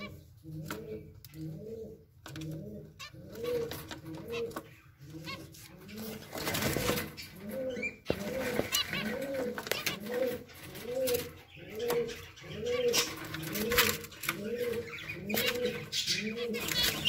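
A dove cooing over and over in a steady rhythm, about one coo a second, broken briefly about six seconds in by a rustling noise. Short, sharp chirps of zebra finches come through above it.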